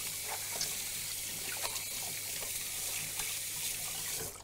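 Kitchen sink tap running steadily as hands are washed under it, with a few light knocks against the sink.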